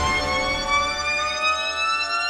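A single held electronic synthesizer note with no beat, gliding slowly upward in pitch.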